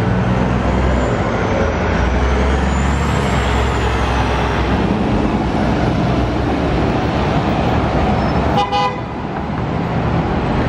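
City transit buses driving past with their engines running in a low drone, and a faint high whine that rises and falls in the first few seconds. A brief horn toot sounds near the end.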